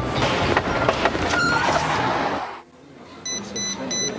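A loud rushing, clattering noise that cuts off sharply about two and a half seconds in. Near the end come three short, high electronic beeps from a mobile phone.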